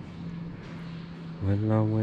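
A steady low hum, then from about a second and a half in a man's voice sings drawn-out "la" syllables on held notes.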